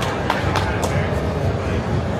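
Casino floor ambience: a steady murmur of background voices and room noise. A quick series of about five light clicks or taps, roughly three a second, comes in the first second or so.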